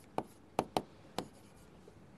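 Stylus pen tapping on an interactive touchscreen board while writing: four sharp clicks over about the first second and a half.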